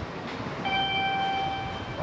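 Shinkansen platform noise with a train running. A single clear electronic-sounding tone is held for about a second in the middle.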